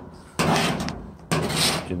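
Two strokes of a hand-held blade scraper across a steel Chevrolet C10 body panel, scraping off factory paint softened by liquid paint stripper. Each is a sudden scrape of about half a second, the first shortly after the start and the second just past a second in.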